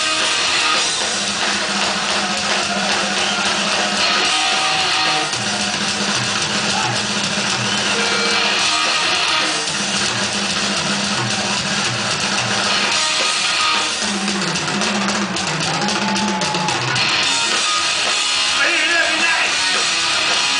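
A live metal band playing at full volume: distorted electric guitars with bass and drums, with held low notes and some bent guitar notes in the second half.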